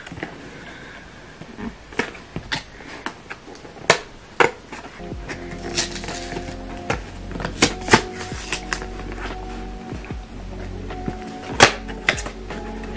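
Cardboard toothbrush box being handled and opened: scattered sharp clicks, taps and scrapes of fingers and flaps on the card, the loudest near the end. Soft background music with held chords comes in about five seconds in.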